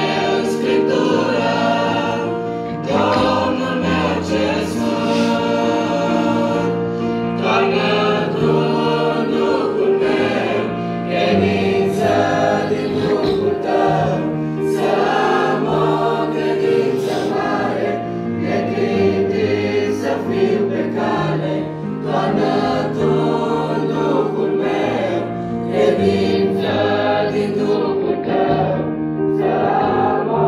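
Mixed youth choir of boys' and girls' voices singing a Romanian hymn in parts, with long held chords.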